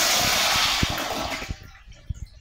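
Wall-hung commercial toilet flushing through its flush valve: a loud rush of water that dies away about one and a half seconds in.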